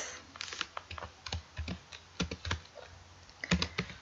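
Typing on a computer keyboard: irregular single keystroke clicks, a short pause, then a quick run of several keystrokes near the end.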